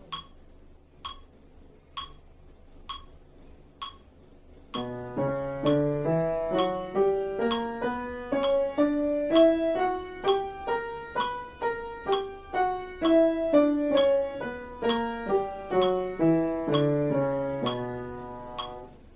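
Upright piano playing a B harmonic minor scale in both hands, legato at a soft dynamic, stepping up and back down; the notes start about five seconds in. A metronome ticks evenly about once a second throughout, at the scale's slow tempo.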